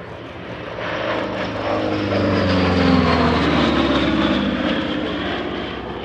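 A Republic P-47D Thunderbolt's Pratt & Whitney R-2800 Double Wasp radial engine and propeller on a low, fast flyby. The sound swells to its loudest about three seconds in, drops in pitch as the aircraft passes, then fades away.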